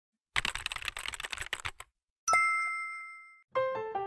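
Intro sound effects: a rapid run of clicks lasting about a second and a half, then a single bright ding that rings out for about a second. A melody of keyboard or piano notes starts near the end.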